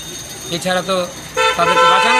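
A vehicle horn sounds one loud, steady honk, starting about one and a half seconds in, after a man's brief word.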